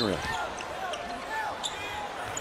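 Basketball dribbled on a hardwood arena court, a few bounces over faint crowd murmur and distant voices.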